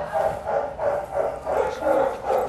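Small Chihuahua-mix dog panting rapidly, about three pants a second.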